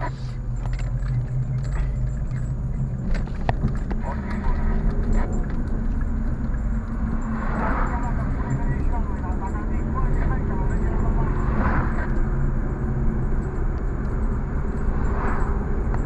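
Car engine and road noise heard from inside the cabin while driving, a steady low hum. A few light clicks come in the first few seconds, and three short swells of noise rise and fade in the second half.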